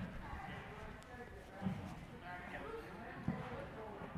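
Faint, distant voices of players talking in the background, with two soft thuds, one before the middle and one near the end.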